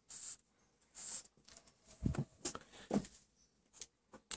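Marker pen drawing on paper: several short scratchy strokes.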